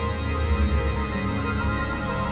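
Dark experimental synthesizer drone music: many long held tones layered over a heavy low drone.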